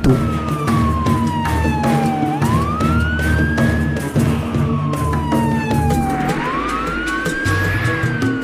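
Ambulance siren wailing in two slow cycles: each time the tone falls over about two seconds, then sweeps back up, over background music.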